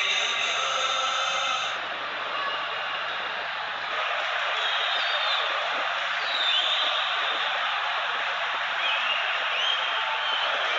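Stadium crowd of football supporters making a dense, steady noise of many voices. Some held chanting fades out about two seconds in, and a few short high calls rise above the crowd in the second half.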